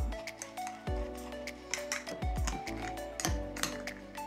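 Background music with a steady beat, over a few light clinks of a metal spoon against a glass mason jar.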